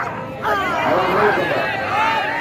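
A crowd of men shouting and cheering, many voices overlapping, with one loud falling shout about half a second in, as one wrestler throws and pins the other.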